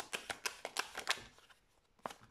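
A tarot deck being shuffled by hand: a quick run of light card flicks and clicks that thins out and stops about a second and a half in.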